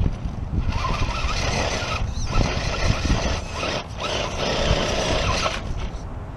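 Axial SCX10 radio-controlled rock crawler's electric motor and geared drivetrain whining as it climbs over boulders, in spurts with short breaks about two seconds in and near four seconds, stopping shortly before the end. Low wind rumble on the microphone underneath.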